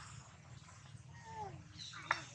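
A long-tailed macaque giving a short, faint call that falls in pitch about a second in, over a low steady hum.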